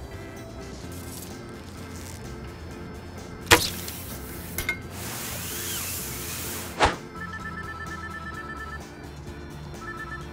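Sound-designed action effects over background music. About three and a half seconds in comes a sharp arrow shot and hit, then a long whoosh of a body sliding down a rope line, ending in a second hard thud. A phone then trills its ringtone twice.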